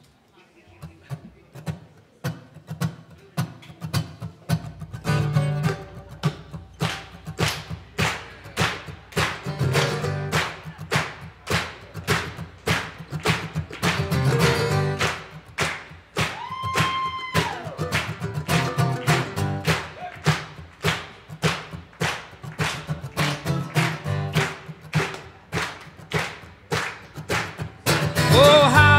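String band playing an instrumental intro: acoustic guitar strummed in a steady rhythm with mandolin, and a bass guitar coming in about four seconds in. A single held note bends up and down briefly near the middle.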